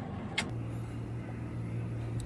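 Low rumble of a car's cabin, a short click about half a second in, then a steady low hum.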